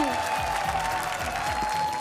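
Studio audience applauding, with a faint steady tone held underneath.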